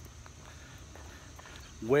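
Faint footsteps of a person walking outdoors, under a steady high drone of insects; a man's voice starts near the end.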